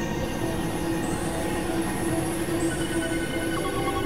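Experimental electronic drone music: layered steady synthesizer tones over a dense, noisy low rumble. Thin, very high whistling tones slide upward into place about a second in and again past halfway.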